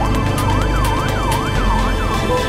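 A siren wailing rapidly up and down in pitch, about three quick rises and falls, over background music.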